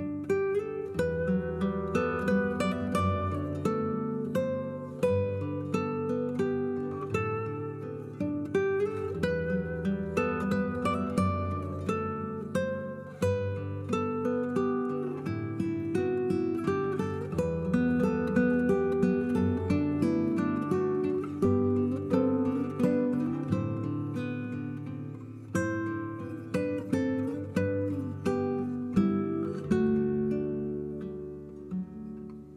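Background music of plucked acoustic guitar, a steady run of picked notes and chords.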